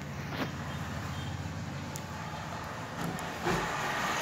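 Steady low background hum with a faint even hiss of ambient noise, and a brief low bump about three and a half seconds in.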